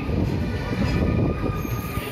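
Jan Shatabdi Express passenger coaches rolling past slowly as the train departs, a steady noise of wheels running on the rails.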